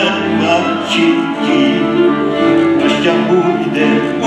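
Cimbalom band playing Horňácko folk music, with several fiddles leading over the cimbalom.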